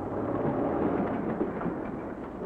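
Early open automobile's engine running as the car drives off, a noisy sound that swells in the first second and then begins to fade.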